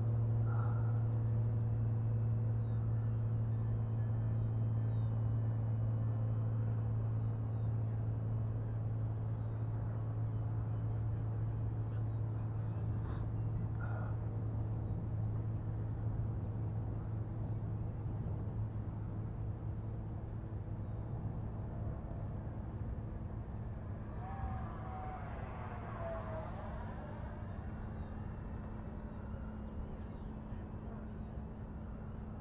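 Radio-controlled model jet making a low pass near the end, its high whine sweeping down in pitch as it goes by, over a steady low hum that slowly fades. Small birds chirp faintly.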